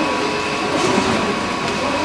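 Paper straw making machine running steadily: an even mechanical noise with a constant high whine.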